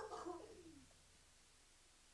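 A person's short voiced sound, falling in pitch and fading out about a second in, then near silence: room tone.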